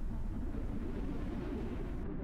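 A low, steady rumbling noise with no clear pitch or rhythm.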